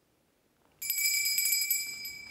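A small bell rung with a few quick strikes, starting about a second in, ringing high and clear and then fading away.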